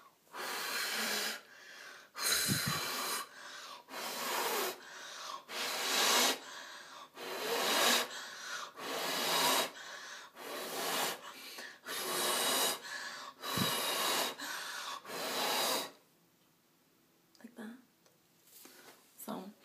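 A person blowing on freshly painted toenails to dry the nail polish: a long series of short, breathy puffs, about one a second, that stop about two seconds before the end.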